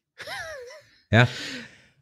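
A short, breathy vocal sound with a wavering pitch, followed about a second in by a man asking "Ja?" in a questioning tone.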